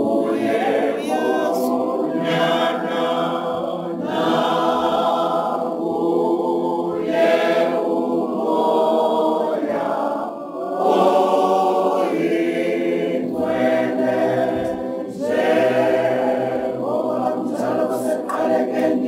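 Choir singing a cappella, several voices in harmony, in sustained phrases of a few seconds each.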